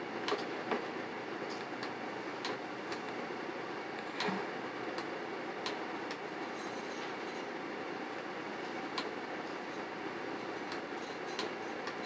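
Scattered light clicks of a computer mouse being worked, irregular and about a second apart, over a steady background hiss.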